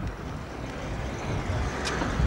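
Uneven low rumble of a moving vehicle with wind buffeting the microphone, and a short click near the end.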